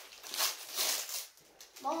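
Foil blind-bag packets crinkling in a few short rustles as they are handled.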